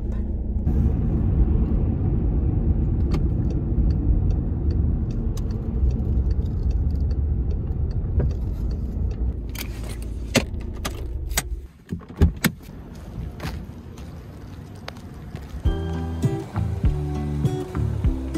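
Car cabin road noise and engine rumble while driving, giving way about ten seconds in to a few sharp clicks and rattles of things being handled as the car stops. Background music starts near the end.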